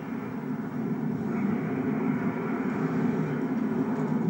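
Diesel train running at a station, a steady low rumble with no clear changes.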